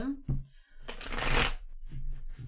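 A deck of tarot cards shuffled by hand: a dense papery rustle lasting about a second in the middle.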